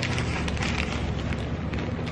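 Pages of a glossy paper catalog being flipped, a light rustle with a few small clicks, over a steady low hum in the room.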